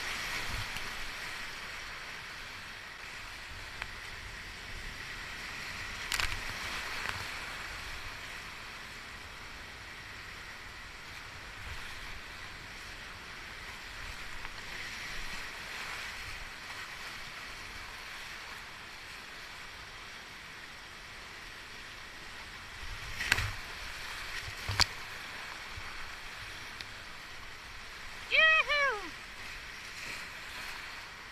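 Rushing roar of flood-swollen whitewater rapids around a kayak, with a few sharp paddle splashes and knocks against the hull. Near the end a person gives a short shout that falls in pitch.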